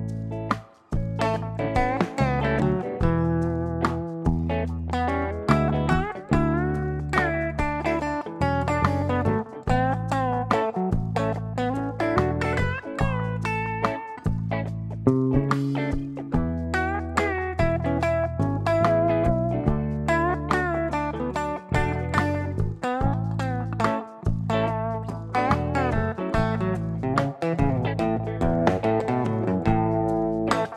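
Telecaster-style electric guitar playing single-note A major pentatonic lead lines over a backing track with drums and bass. The same licks shift up the neck to follow the E and D chords of a slow groove.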